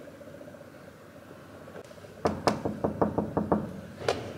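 A quick run of about eight sharp knocks, a little over a second long, over a steady low hum.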